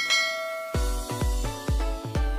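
A bright bell ding as the notification bell is clicked, ringing out for well under a second over background music. Then electronic dance music with a heavy kick drum comes in, about two beats a second.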